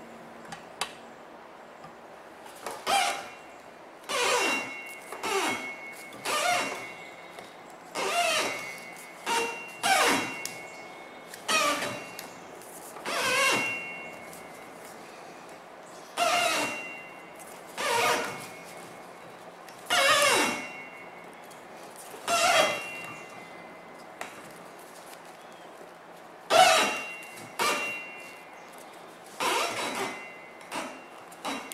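Thin jute string squeaking as it is pulled through a cardboard tensioner and over steel rollers, in repeated pulls every second or two while being wound onto a firework shell break. Each squeak falls in pitch. The squeak is the friction from the cardboard that tensions the string.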